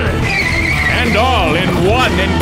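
Race car's tyres squealing as it corners, a high wavering screech over a steady music track.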